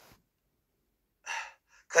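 A woman's short, audible intake of breath about a second in, after a near-silent pause, as she draws breath to speak.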